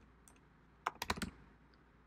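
Typing on a computer keyboard: a couple of faint keystrokes, then a quick run of about five keystrokes about a second in.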